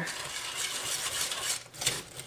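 A wire whisk stirring coconut milk and brown sugar in a stainless steel saucepan: a steady scraping swish of the wires against the pan, with a sharper tap near the end.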